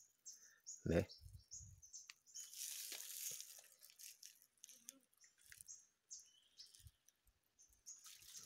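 Faint, scattered bird chirps in forest, with a brief rustle about two and a half seconds in.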